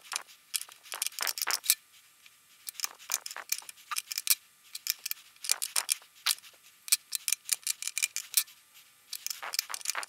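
Rapid, irregular clicks and ticks of a hand driver and small metal parts as the screws of a one-piece scope mount's rings are adjusted, played back sped up, with short gaps between bursts.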